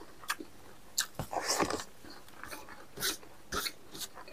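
Close-miked mouth sounds of a man eating spicy meat and rice by hand: chewing and lip smacking. A handful of short wet clicks come through, with one longer, louder noisy smack about a second and a half in.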